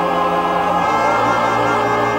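Full stage chorus and orchestra holding one long chord of a gospel-style showtune, the bass note stepping down about a second in.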